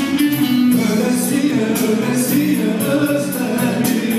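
Live Turkish folk music (türkü): a male vocalist sings through a PA over electric bağlama and keyboards, with a steady beat.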